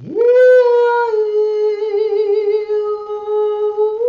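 A woman singing a Dao song in long held vowel notes. Her voice slides up into the first note, steps down a little about a second in, holds it with a gentle vibrato, and steps back up near the end.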